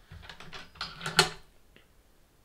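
Small fly-tying tools being handled on the bench: a quick run of light clicks and taps over the first second and a half, the sharpest a little past one second.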